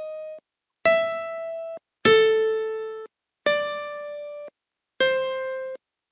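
Single recorded piano notes played back one at a time as keys are clicked on an on-screen Python piano. Four notes of different pitches start in turn, each ringing about a second and cut off abruptly, with short silences between them.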